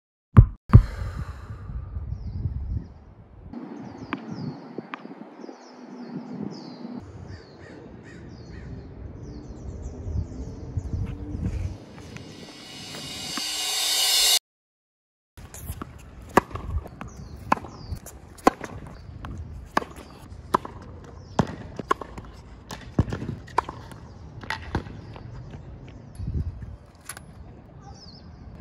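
Outdoor court ambience with birds calling, then a loud rising swell that cuts off suddenly, followed after a moment of silence by a steady run of sharp tennis-ball hits and bounces, roughly one or two a second.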